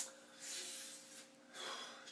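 A sharp click, then two heavy, noisy breaths from a man, the first about half a second in and a shorter one near the end.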